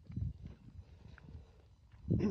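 Faint, soft low thuds of footsteps on damp field soil, irregular and dying away toward the end.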